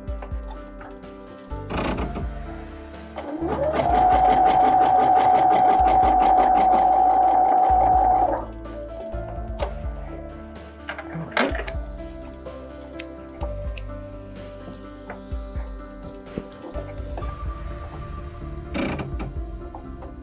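Electric sewing machine stitching a short run of satin stitch: the motor speeds up with a rising whine, then holds a steady, loud whir with rapid needle strokes for about five seconds before stopping. A few sharp clicks come before and after the run.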